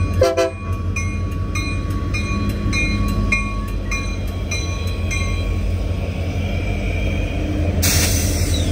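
Union Pacific diesel locomotives passing close by with a steady engine rumble; the tail of a train horn blast ends about half a second in. A grade-crossing bell dings a little under twice a second and fades out about six seconds in. A sudden loud noise comes just before the end.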